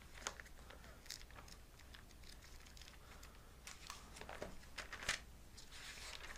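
Pages of a Bible being leafed through: a scattering of faint, brief paper rustles, a few more of them close together about four to five seconds in.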